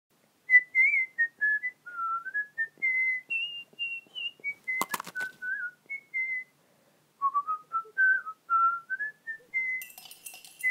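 A whistled tune, one clear note at a time, wandering up and down in short phrases. A few sharp clicks come just before the midpoint, and the tune breaks off briefly before going on.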